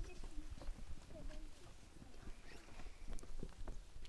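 Scattered light knocks and clicks with brief, faint murmurs of voices over a low rumble.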